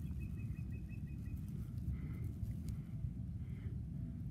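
Low, steady rumble of wind on a phone microphone outdoors, with a faint high pulsing trill in the first second and a half.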